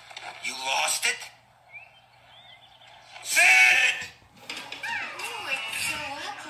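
Cartoon soundtrack voices: two short vocal outbursts without clear words, about half a second in and again around three and a half seconds, then background music mixed with voices from about five seconds on.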